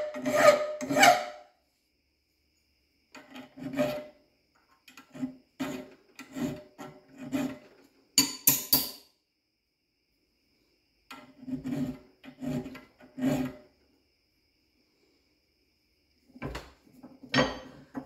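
Hand file rasping across the teeth of an unhardened steel dovetail cutter held in a vise, filing relief behind the cutting edges. It comes as short strokes in bunches of three to five with pauses between, and one brighter, higher-pitched stroke about eight seconds in.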